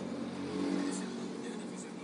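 Car engine and road noise heard from inside the cabin while driving, swelling slightly about half a second in.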